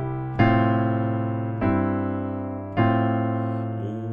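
Piano chords: three chords struck about a second apart, each left to ring and fade before the next.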